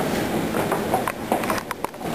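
Footsteps on a hard floor, with several sharp clicks in the second half as a louvered wooden closet door is taken in hand.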